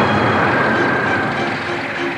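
Cartoon spacecraft thruster sound effect: a steady rushing jet noise with a faint high whine that dips slightly in pitch.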